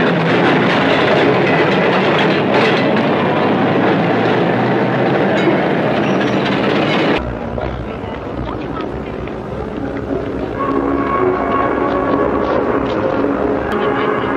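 Trolley cars and street traffic running past, a dense, steady rail clatter and rumble. About seven seconds in it cuts off sharply to a quieter crowd murmur with faint voices.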